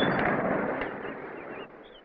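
Wind buffeting the microphone: a rushing rumble that fades and drops away near the end.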